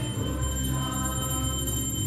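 Devotional kirtan music with a steady metallic ringing over a low, sustained drone.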